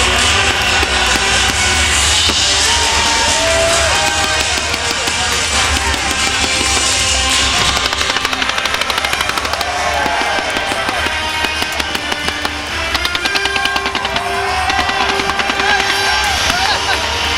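Loud show soundtrack music, with a rapid string of fireworks pops and crackles starting about halfway through as shells and comets go up.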